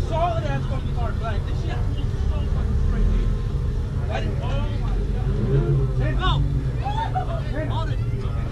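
A car engine idling steadily, with indistinct voices of people talking around it.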